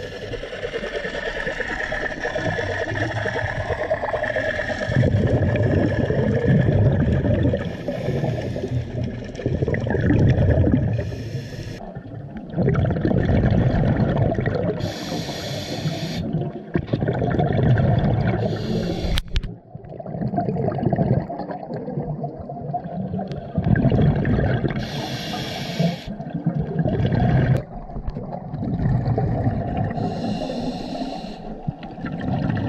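Scuba regulator breathing underwater. Each inhale gives a short hiss and each exhale a longer rumbling burst of exhaust bubbles, in a cycle repeating every few seconds. A single sharp click comes about two-thirds of the way through.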